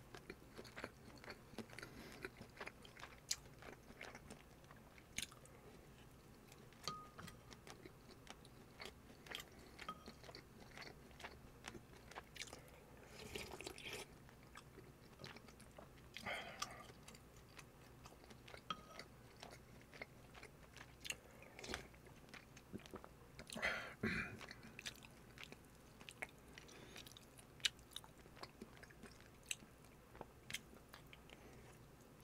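Close-miked eating sounds of bulgogi on rice: chewing with many small wet mouth clicks, and a few louder, longer bites or sips about 13, 16 and 24 seconds in.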